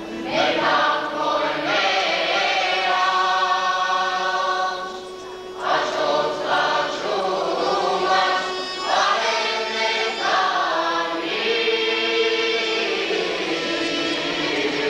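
Armenian folk ensemble singing a traditional wedding song in chorus, with sustained phrases broken by a short pause about five seconds in, over a steady held low note.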